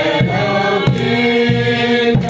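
A group of people singing together, clapping their hands in time about once every two-thirds of a second.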